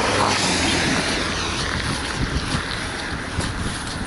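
A car passing close on a wet road, its tyres hissing through the water on the pavement, loudest in the first second or so and then fading.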